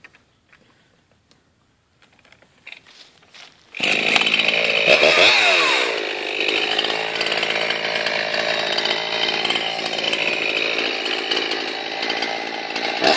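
Two-stroke chainsaw starting up about four seconds in, its engine pitch dipping and rising once as it is revved, then running steadily at high speed.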